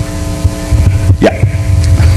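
Steady hum and low rumble from a public-address system between sentences, with a short vocal sound just over a second in.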